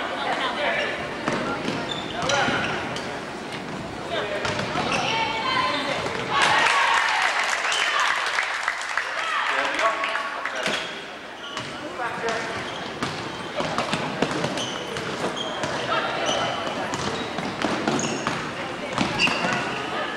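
Basketball game sound in a gym: a basketball bouncing on the hardwood court in short knocks, over continuous crowd chatter and shouting from the stands. The crowd noise swells about six seconds in and eases a few seconds later.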